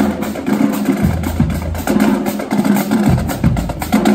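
Marching band passing close by: snare drums, bass drums and cymbals beat a rapid rhythm while sousaphones hold low notes that change about every second.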